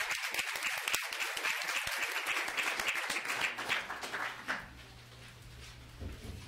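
Audience applause, many hands clapping, dying away about four and a half seconds in.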